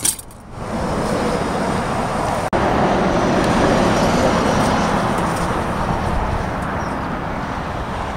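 Steady noise of freeway traffic going by, with a brief break about two and a half seconds in.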